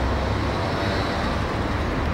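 Steady street traffic noise: a continuous rumble and hiss of passing vehicles with no distinct events.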